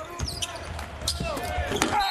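Basketball being dribbled on a hardwood court: a run of short, sharp bounces, with faint voices behind.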